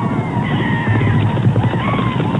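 Film soundtrack of a cavalry charge: many horses galloping, with wavering high cries and music over the hoofbeats.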